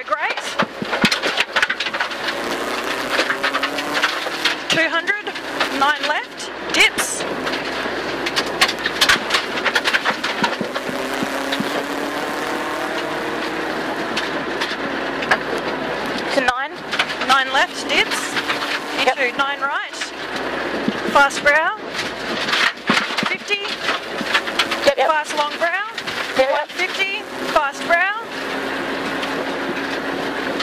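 Rally car's engine heard from inside the cabin, running hard and rising and falling in pitch through gear changes, with tyre noise and gravel clattering against the underbody.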